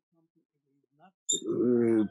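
Near silence for just over a second, then a voice starts with a drawn-out vowel that leads into speech.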